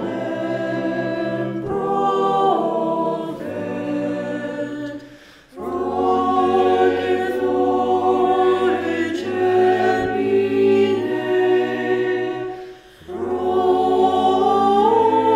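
Mixed SATB choir singing a cappella in Latin, the four parts holding slow, sustained chords. The sound dips briefly between phrases, about five seconds in and again near the end.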